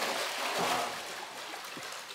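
Pool water splashing and sloshing steadily as a swimmer strokes through it, the arms churning the surface.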